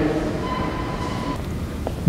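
Steady low rumble and hiss of a large church's room noise, with a faint brief tone in the middle and a single click near the end.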